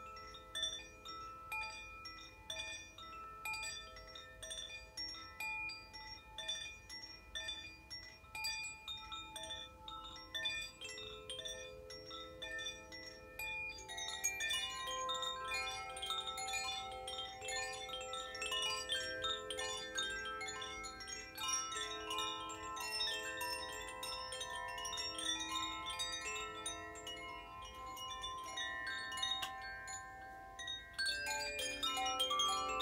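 Wind chimes ringing, many clear metal tones struck at random and overlapping as they ring out; about halfway through the chiming grows busier and a little louder.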